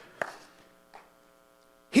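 A pause with a faint, steady electrical buzz, after a soft click a fraction of a second in; a man's voice starts again right at the end.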